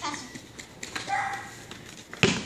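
Children's voices during play: a short call at the start and another a little past a second in, with a few light taps in between.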